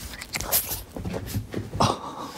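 French bulldog puppy making a run of short noises while playing, the loudest one just before the end.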